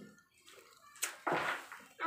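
Raw beef meatball paste scooped off with a spoon and dropped into a pan of water, with a small splash about a second in.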